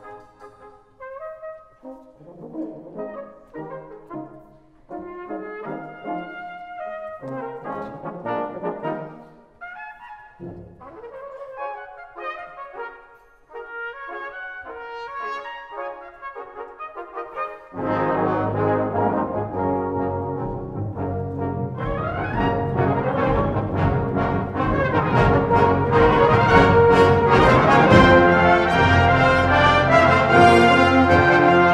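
Full brass band of cornets, horns, euphoniums, trombones and basses playing: a soft, sparse passage of short separate phrases, then about two-thirds of the way in the whole band comes in loud and keeps growing louder to the end.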